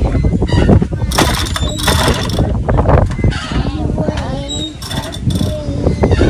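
Wind buffeting the microphone in loud gusts, with children's voices over it; a child's voice rises and falls in a drawn-out call in the middle.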